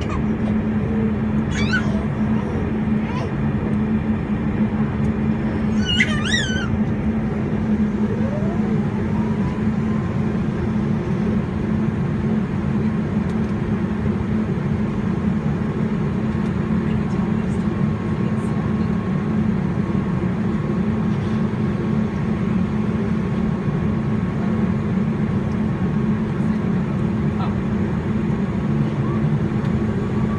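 Steady low hum of a Saab 340B+ turboprop cabin on the ground. About eight seconds in, a whine rises and then holds at a steady pitch, typical of the engine's turbine spooling up during start while the propeller is not yet turning. A few brief high squeaky calls sound in the first seconds.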